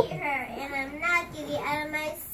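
A young child's voice delivering lines in a sing-song, half-sung way.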